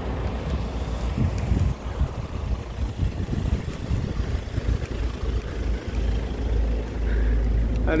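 Low, gusty rumble of wind buffeting the microphone over the engine and tyre noise of an SUV rolling slowly close alongside; a steadier low engine hum takes over about six seconds in.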